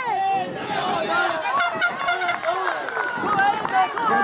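Several spectators' voices calling out and talking over one another, none clear enough to make out.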